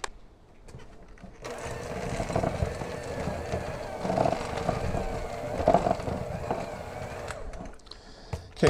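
Electric hand mixer running, its beaters churning thick chocolate chip cookie dough in a glass bowl. It switches on about a second and a half in and stops shortly before the end.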